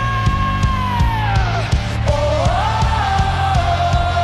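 Live rock band playing: a female lead voice holds two long sung notes, the first sliding down and fading about halfway through, the second rising and then held, over steady drum hits, bass and guitar.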